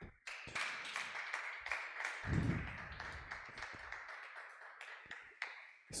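A small audience applauding, the clapping thinning out and fading toward the end.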